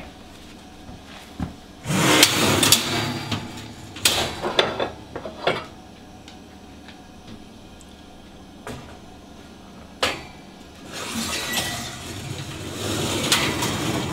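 Wire oven racks sliding and rattling as a glass baking dish goes onto them, with several sharp knocks of metal and glass, the loudest about four and ten seconds in.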